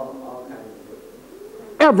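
A man's voice: a short, steady held tone that fades out in the first half second, then a quiet stretch, and a man starts speaking near the end.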